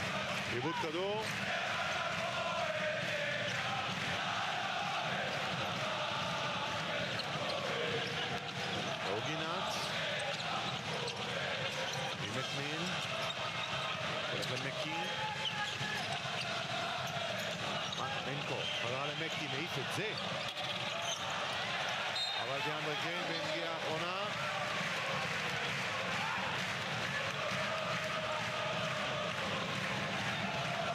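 A basketball being dribbled on a hardwood court under steady arena crowd noise, with short squeaks from players' shoes.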